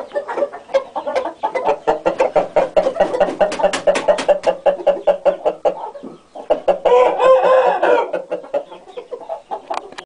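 Chickens clucking rapidly and steadily, several clucks a second. About seven seconds in, a rooster gives a short crow lasting about a second.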